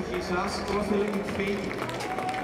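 A man's voice through the PA, talking to the crowd between songs.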